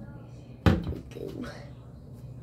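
A single sharp thump close to the microphone about two thirds of a second in, something hard knocking on the counter, followed by a couple of lighter clicks.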